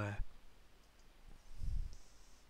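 A computer mouse button clicking faintly as a drop-down menu is opened. A soft low thump follows about a second and a half in.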